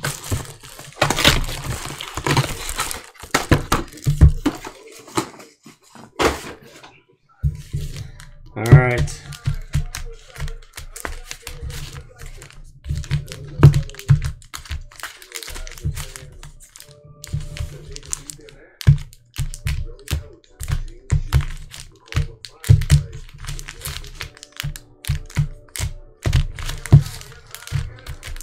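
Foil trading-card packs being pulled from their boxes and shuffled together by hand, with frequent irregular clicks, knocks and crinkles as the packs hit each other and the table. Faint music underneath.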